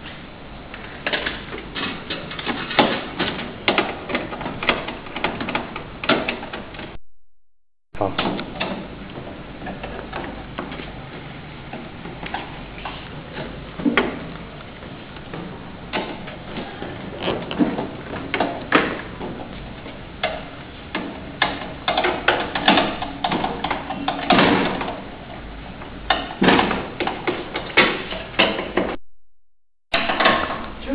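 Clicks and knocks of a screwdriver and metal parts being handled on a heating table's metal frame and glass top, over a murmur of voices. The sound drops out briefly twice.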